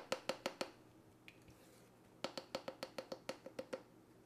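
A plastic measuring spoon tapping and clicking against a plastic flour tub as a tablespoon of flour is scooped and levelled off: a short run of light clicks at the start, then a quicker run of about a dozen from about two seconds in.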